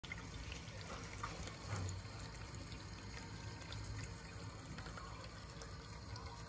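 Tap water running steadily into a stainless steel sink.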